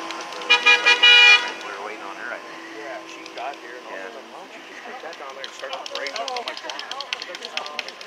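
Vehicle horn honking about half a second in: three short toots and then a longer blast.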